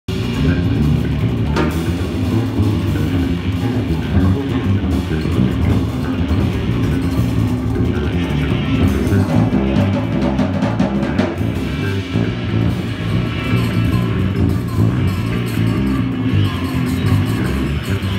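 Live band of electric bass, guitar and drum kit playing together, loud and dense, with a heavy bass end.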